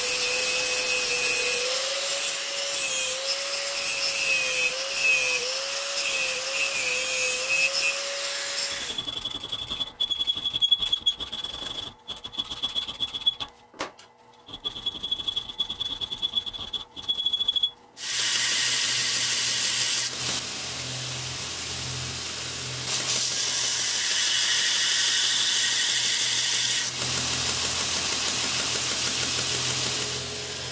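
An angle grinder's abrasive disc cuts a steel blank, its motor tone wavering as the load changes. After about nine seconds this gives way to irregular strokes of a hand file on the steel. From about eighteen seconds in, a belt grinder runs steadily, grinding the piece.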